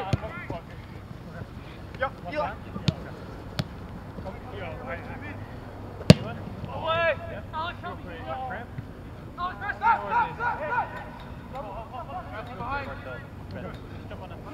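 Soccer ball being kicked: a few sharp thuds, the loudest about six seconds in, among players' distant shouts.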